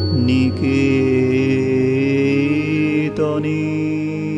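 Closing bars of a Bengali Brahmo devotional song: a long held sung note over sustained instrumental accompaniment, with a brief pitch flourish about three seconds in.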